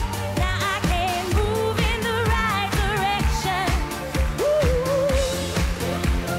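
Live pop band performance: a female lead singer holds long notes with wide vibrato over a steady drum beat and sustained bass.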